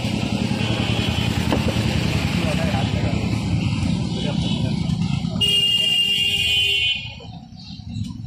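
Background voices over a running motor-vehicle engine, with a held high tone about five and a half seconds in; the noise falls away near the end.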